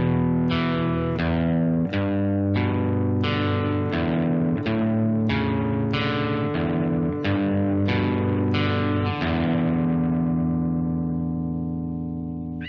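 Electric guitar playing a slow, simple arpeggio note by note, about one plucked note every two-thirds of a second, each note ringing on under the next; the open low E string is used as a transition note between three chord shapes. About nine seconds in, the last note is left to ring out.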